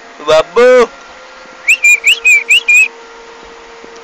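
Five short whistled chirps, each rising quickly in pitch, about four a second, a little under two seconds in.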